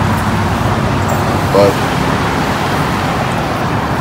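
Steady road traffic noise from cars passing on a multi-lane road, with a man's single brief word about a second and a half in.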